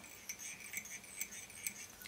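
Faint clicks and light scratching of black tying thread being wound onto the shank of a dry fly hook held in a vise.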